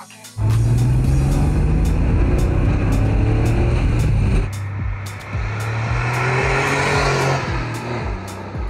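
Porsche 964 Targa's air-cooled flat-six under acceleration, its note climbing. It comes in abruptly, eases off about halfway through, then pulls again with a rising note.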